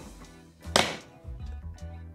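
A single sharp plastic click a little under a second in as a hard-shell plastic travel case is opened, over quiet background music.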